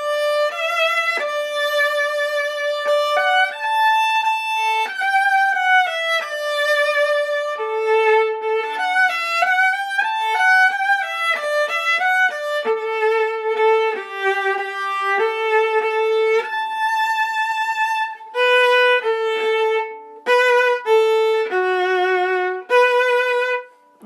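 Solo viola played with the bow: a passage of held notes with vibrato and some quicker note changes, with short breaks between phrases near the end.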